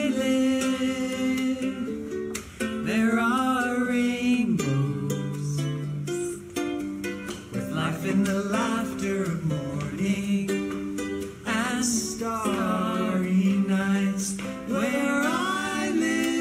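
A man and a woman singing a slow Hawaiian lullaby together, with long held notes, over a plucked string instrument accompaniment.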